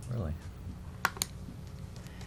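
Laptop keyboard keystrokes: two sharp taps about a second in, over a steady low room hum.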